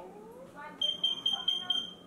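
A high-pitched electronic beeper sounding a quick run of short beeps, about five a second, for about a second, over faint voices.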